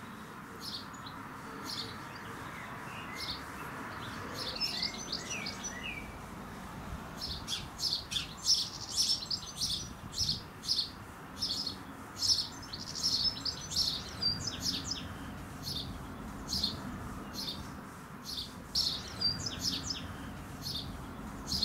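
House sparrow chirping over and over in short, sharp notes, faint at first and then a steady run of about two chirps a second from about a third of the way in.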